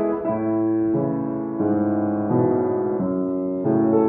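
Upright piano played slowly: held chords, changing a little more than once a second.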